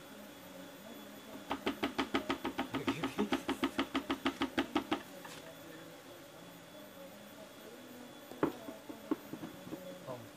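Plastic bucket being rapidly tapped to shake Apis cerana bees out of it: a fast, even run of about two dozen knocks over three and a half seconds. Near the end comes one sharp knock and a couple of lighter ones.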